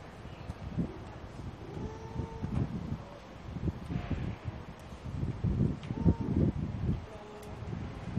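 Wind rumbling on a handheld camera's microphone, with irregular low bumps and two brief voice calls, one about two seconds in and one about six seconds in.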